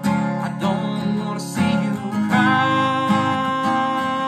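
Acoustic guitar strummed in chords, with a man's voice singing long held notes over it.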